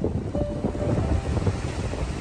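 Wind buffeting the microphone in a steady low rumble, with sea waves washing against the rocks of a breakwater.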